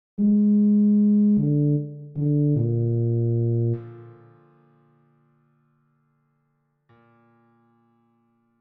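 Computer playback of a tuba part: four notes stepping down in pitch, the last and lowest held and then fading away, and one faint note near the end.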